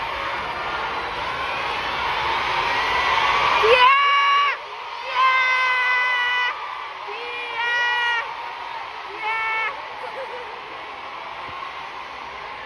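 A crowd of fans screaming and cheering, building to a peak about four seconds in, then cut off abruptly. Four drawn-out high-pitched calls at a steady pitch follow: fans teasing with "cie cie".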